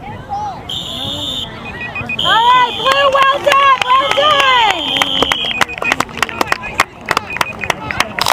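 Referee's whistle blown twice, a short blast and then a long one, most likely ending the first half, while spectators and players shout over it. Sharp handling clicks follow near the end.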